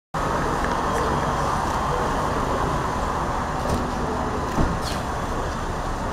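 Steady outdoor vehicle and traffic noise from around a parked car, with a soft thump a little past halfway.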